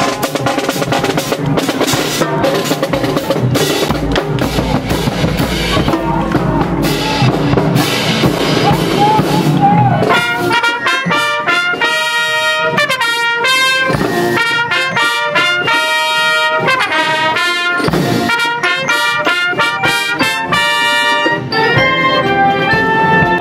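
High school marching band playing, brass and percussion together. The first half is full band with drums and cymbals. About ten seconds in the low drums mostly drop away and the trumpets carry a melody of short, separate notes.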